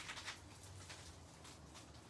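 Faint crackling and rustling of a carnivorous plant's root clump being torn apart by hand, roots and wet potting medium pulling loose in scattered small crackles, thickest in the first half second.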